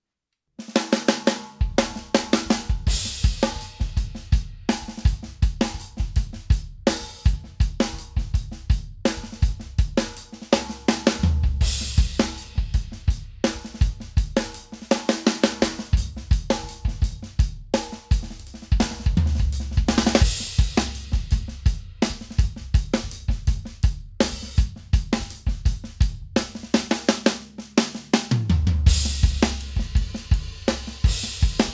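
Drum kit played in a steady groove on snare, bass drum, hi-hat and cymbals, starting about half a second in. The snare is a late-1990s Ludwig Acrolite LM404 aluminium snare in black galaxy finish, tuned high ('cranked') with its internal damper off.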